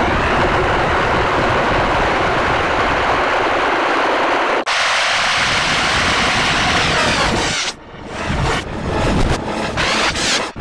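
A cartoon woman's scream, slowed and heavily distorted by audio effects into a loud, steady, harsh rumbling noise. About halfway through it changes abruptly and loses its low rumble. Near the end it breaks into choppy bursts as the clip plays in reverse.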